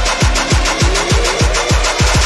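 Trap music build-up: deep 808 bass kicks, each falling in pitch, repeating faster and faster under a slowly rising synth tone.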